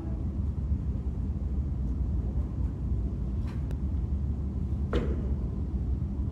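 Steady low rumble of the room's background noise, with two faint clicks about three and a half seconds in and a sharper click near five seconds.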